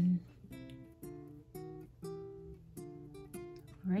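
Background music: an acoustic guitar playing a steady run of plucked notes, about two a second.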